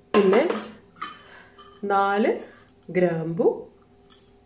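Metal utensils clinking against a stainless-steel saucepan as whole spices are dropped in, with a woman speaking in three short phrases.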